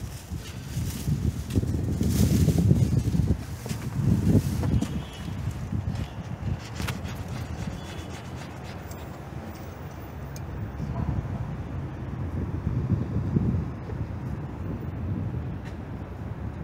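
Wind buffeting the microphone, a low rumble that swells and fades in gusts, with a few faint clicks partway through.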